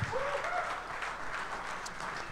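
Audience applauding, with a brief voice from the crowd near the start.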